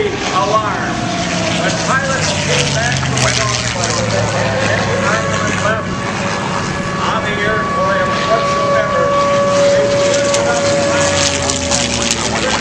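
Propeller airplanes with piston engines flying over: a steady low drone whose pitch sinks slowly in the first few seconds, under the voices of a crowd.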